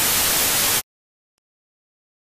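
Analog television static: a loud, even hiss of white noise that cuts off suddenly less than a second in.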